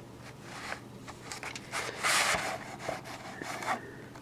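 A VHS cassette sliding out of its cardboard sleeve: plastic rubbing and scraping against cardboard in several short bursts, loudest about two seconds in.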